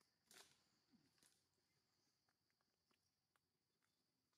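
Near silence: a faint steady high hiss with a couple of soft rustles early on and scattered faint ticks.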